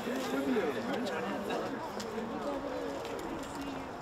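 Quiet chatter of a small group of people talking among themselves, several voices overlapping.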